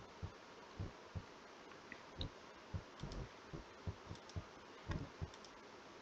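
Faint, dull clicks of a computer mouse, about fifteen at uneven spacing over the six seconds, each short and sharp.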